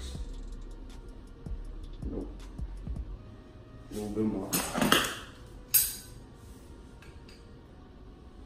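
Small metallic clicks and clinks of a tool and hands working at a bicycle disc brake to pull out the brake pads, with one sharp click just before six seconds in. A brief murmur of voice about four seconds in.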